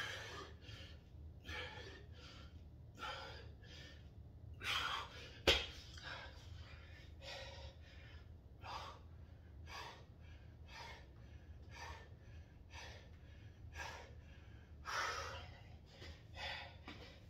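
A man breathing hard with short, quick breaths, more than one a second, from the exertion of push-ups and squats. One sharp knock about five and a half seconds in stands out as the loudest sound.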